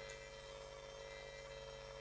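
Faint room tone with a steady low electrical hum.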